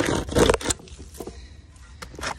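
Hand chainsaw's chain rasping through a wooden log in about three quick strokes, then going quieter as the cut finishes.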